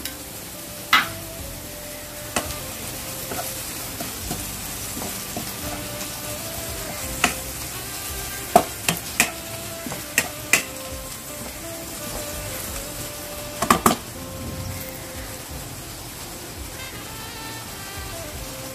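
Bottle masala spice powder frying in oil with green chillies and garlic in a nonstick frying pan, sizzling steadily while a spatula stirs it, with a dozen or so sharp knocks and scrapes of the spatula against the pan.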